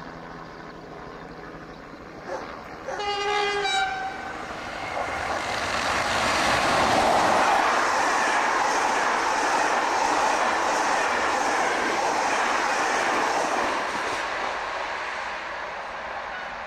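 SNCF BB 26000 "Sybic" electric locomotive sounds its horn once, for about a second, then passes at speed hauling Corail coaches: a rush of wheel and rail noise that swells to its loudest a few seconds later and fades as the train draws away.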